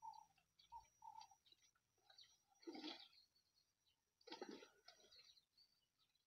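Near silence, with faint scattered bird chirps and two brief soft noises about three and four and a half seconds in.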